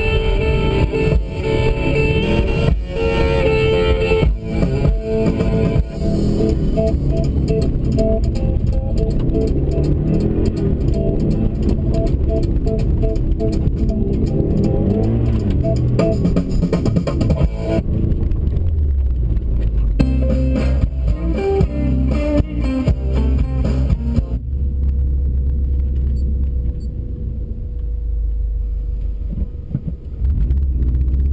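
Background music with guitar. In the last third it thins out to a deep, steady low rumble with a faint held tone.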